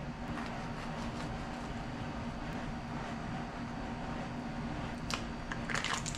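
Steady low room hum in a kitchen, with a light click and a short crinkle of foil wrapping near the end.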